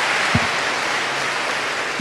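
Audience applauding steadily, with a single low thump about a third of a second in.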